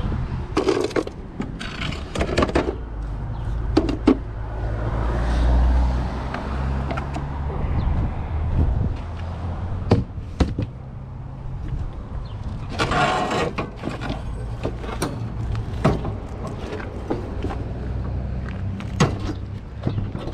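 Wooden furniture parts and scrap being handled and put down: scattered knocks and clatters with footsteps, and a longer noisy stretch about thirteen seconds in, over a steady low rumble.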